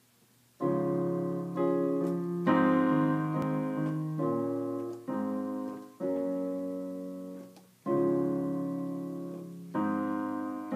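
Electronic keyboard with a piano voice playing a slow chordal introduction, starting about half a second in. Chords are struck about every one to two seconds and each is left to ring and fade before the next.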